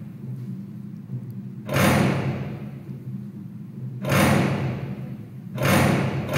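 Electronic soundtrack: three sudden swells of rushing noise, each fading over about a second, over a steady low hum.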